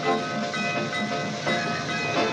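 Steam locomotive running past, its sound laid over background music.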